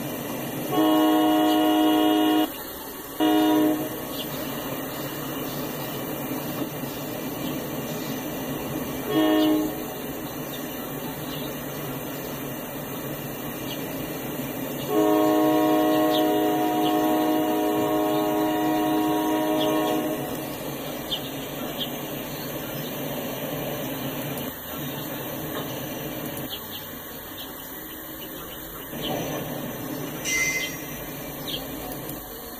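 Locomotive horn sounding four blasts: a long one about a second in, two short ones a few seconds apart, then a long blast held about five seconds. Under it runs the steady rolling noise of the passing autorack train.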